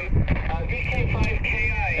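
A station's voice coming from a small external speaker on an Icom 703+ HF transceiver tuned to 20 metres. The received audio is up in volume now that a radial wire has been laid out for the whip antenna. Wind rumbles low on the microphone.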